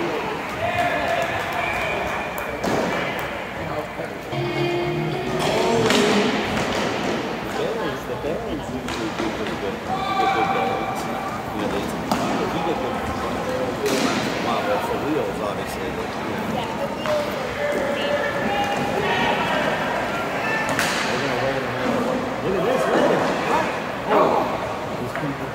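Hockey game play: sharp knocks and thuds of puck and sticks against the boards come every few seconds, under distant shouts from players and the crowd.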